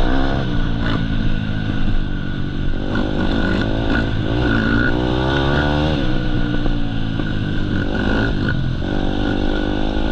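Off-road dirt bike engine running hard across rough ground, its revs climbing and dropping several times as the rider works the throttle.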